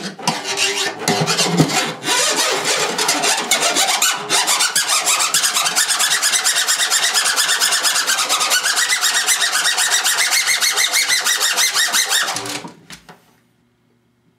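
Drum improvisation on a drumhead: a few seconds of scattered strikes and scrapes, then a stick rubbed rapidly back and forth across the head in a fast, even rasp like sawing, with a ringing pitch that rises and falls. It stops suddenly about twelve and a half seconds in.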